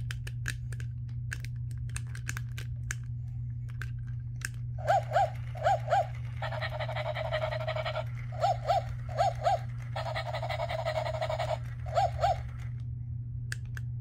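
Battery-operated toy Dalmatian puppy's small speaker playing recorded yaps in quick pairs and runs of four, alternating twice with a longer breathy sound of about a second and a half. Light scattered clicking comes before the yaps.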